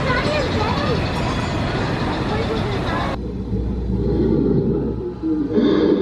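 People's voices over outdoor noise, then after an abrupt cut, about three seconds in, a low rumble from a mine-train roller coaster running on its track, with a brief louder burst near the end.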